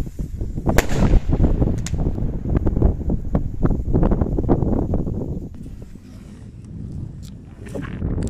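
Sharp cracks from a small firework rocket bursting overhead, about a second and two seconds in, over a low rumble of wind buffeting the microphone.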